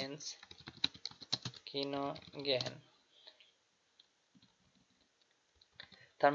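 Typing on a computer keyboard: a quick run of key clicks that stops about three seconds in.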